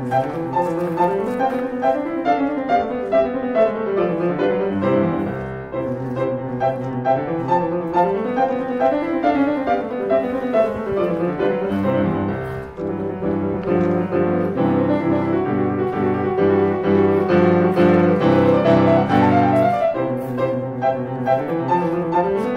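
Background piano music in a classical style: rising and falling runs of notes over a bass line, turning into fuller repeated chords in the second half.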